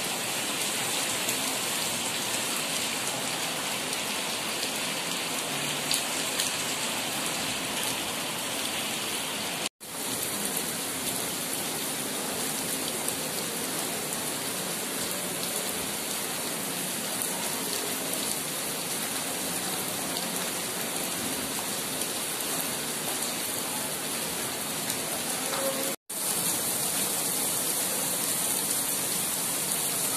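Heavy rain pouring steadily onto a flooded paved courtyard, a dense hiss of drops splashing into standing water. It breaks off twice for an instant, about ten seconds in and again near the end.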